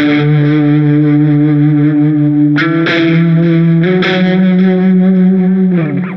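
Electric guitar, a Fender Telecaster through a modelled distorted patch, playing three long held single notes on the low string tuned down to drop D. It plays the 12th fret first, moves up to the 14th fret about two and a half seconds in and to the 16th fret about a second later, each note rising a step and ringing out until it fades near the end.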